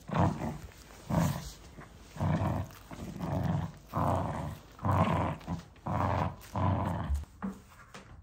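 Small poodle growling in play while tugging on a plush toy, in about eight short bursts roughly a second apart.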